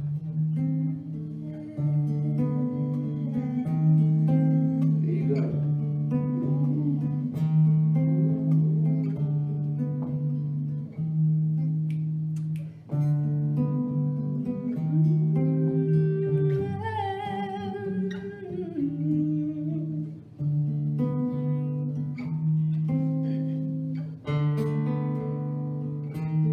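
Acoustic guitar playing a steady pattern of low bass notes and chords in a live duo performance. A singing voice joins it, with one long held note that wavers with vibrato about two-thirds of the way through.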